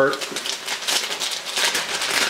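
Bread slices frying in olive oil on a hot nonstick griddle pan, a steady sizzle of dense fine crackles.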